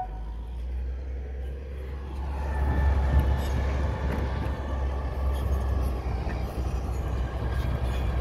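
Heavy diesel earthmoving machinery running: a steady low rumble that grows louder about two and a half seconds in.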